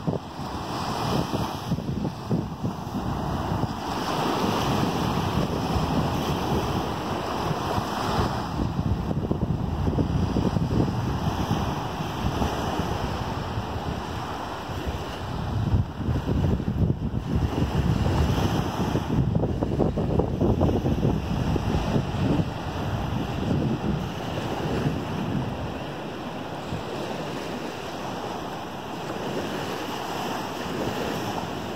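Small Gulf of Mexico waves breaking and washing up onto a sandy beach, the surf swelling and easing every few seconds, with wind buffeting the microphone.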